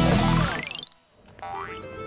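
Intro music cuts off as a rising sound effect of quick repeating ticks sweeps up in pitch and fades out about a second in, followed by quiet room sound.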